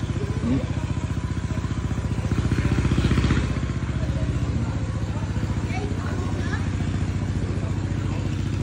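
A small engine running steadily at idle, a low even pulsing that swells slightly about three seconds in, with faint voices.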